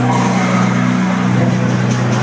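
Loud music over a public-address system in a large hall, dominated by a steady, heavy bass, with crowd chatter underneath.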